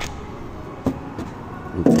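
Handling noise of a multimeter and its test probes being set against metal under a car: a few light clicks and knocks, the sharpest a little under a second in, over a faint steady background.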